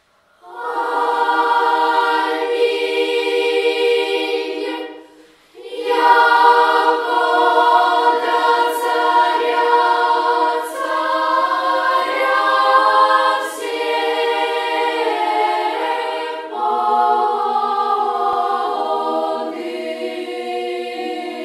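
Children's choir singing a cappella. It comes in about half a second in, breaks off briefly about five seconds in, then carries on.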